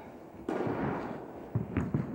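Tennis ball impacts echoing through an indoor tennis hall: one sharp knock about half a second in with a long ringing echo, then a few smaller knocks near the end.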